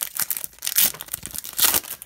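Glossy wrapper of a hockey card pack being torn open by hand and crinkled: irregular crackling and ripping, loudest about a second in and again near the end.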